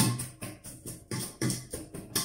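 A pestle pounding chopped green onion with salt and dill in a stainless steel bowl: rhythmic thuds with a metallic edge, about four to five strokes a second, bruising the onion so it gives up its juice.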